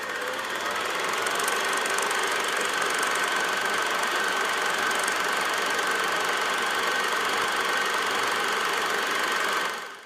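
A steady machine-like noise with a faint high whine running through it, cutting off just before the end.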